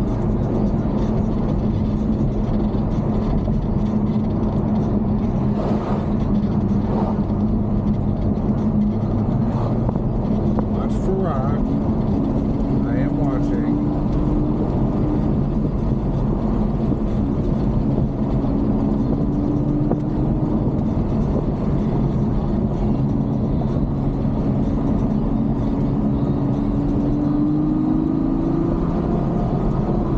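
Ferrari GTC4Lusso driving at road speed, heard from inside the cabin: a steady engine drone over road and tyre noise, with a higher engine tone that comes and goes and rises slightly as the car pulls.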